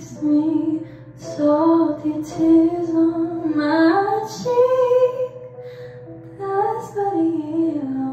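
A young woman singing a slow solo melody into a handheld microphone, in phrases with short breaths between them. About four seconds in, a phrase climbs to a higher held note.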